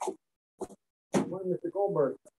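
A person's voice in short, choppy snatches, with dead silence between them as if gated by a video call's noise suppression. A short pop comes at the very start, then a longer stretch of voice about a second in. The words are not clear enough to make out.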